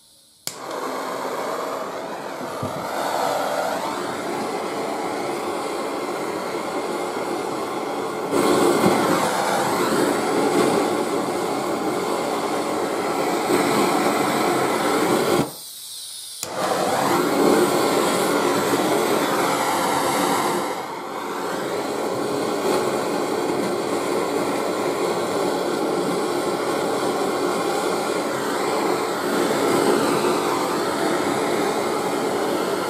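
Gas blowtorch flame burning with a steady, loud rush while heating a copper pipe elbow joint for soldering, with a break of about a second about halfway.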